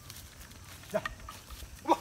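Two short voice calls about a second apart from a ploughman driving a pair of oxen, like the calls he was giving just before.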